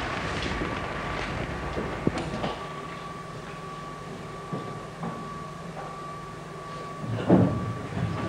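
Steady low hum of a running projector under hiss, with a few soft clicks in the first half and a thin steady whine throughout.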